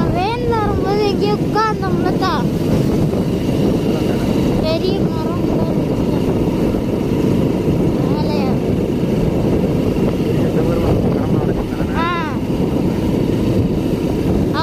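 Motorcycle running along the road, a steady engine sound mixed with wind rushing over the microphone. A voice breaks in with short bursts of talk several times.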